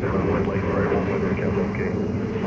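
Steady drone of an aircraft engine, even in level throughout.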